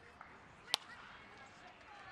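Wooden baseball bat striking a pitched ball: one sharp crack about three quarters of a second in, over faint ballpark crowd noise.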